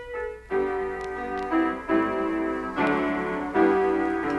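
Keyboard music played from a vinyl record on a turntable: a short held note, then a run of sustained chords that change about five times in the last three and a half seconds.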